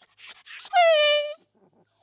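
A single dog-like whimper for the sick toy dog: one steady, high whine lasting well under a second, falling slightly at the end, about a second in. A few short, very high squeaks come just before it.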